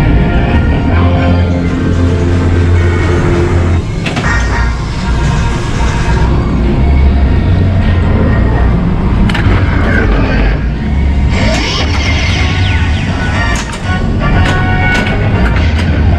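Bally Attack from Mars pinball machine in play: its music and electronic sound effects over strong bass, with booms and many sharp knocks of the ball and flippers during the game.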